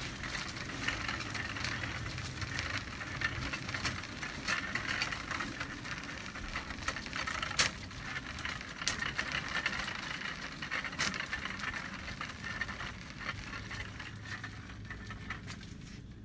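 Plastic shopping cart rolling over a hard store floor: a steady rattling rumble from the wheels and basket, with scattered clicks and one sharper knock about halfway through.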